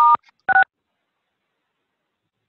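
Two short touch-tone keypad beeps, half a second apart, from a phone dialled into a video conference: star then six, the keypress that mutes a phone-in participant.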